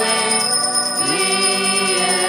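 A cluster of altar bells is shaken continuously, ringing the blessing with the monstrance, over hymn singing and music.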